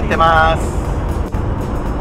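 1955 Nash Rambler station wagon on the move, heard from inside the cabin: a steady low rumble of engine and road noise. A brief voice sounds near the start.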